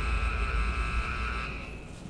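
Steady low hum and hiss on a phone line during a pause in the call, with a faint high steady tone that fades away shortly before the end.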